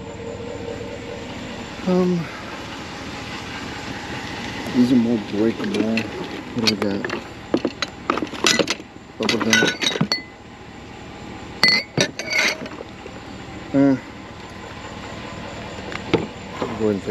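Drinking glasses clinking against each other as they are set into a cardboard box, a run of sharp, briefly ringing clinks about halfway through.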